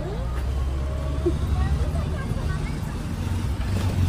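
A motor vehicle's engine running close by with a steady low rumble, alongside faint voices.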